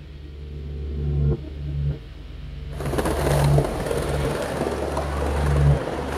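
Low bass notes of a music track, then, from about three seconds in, skateboard wheels rolling over stone paving.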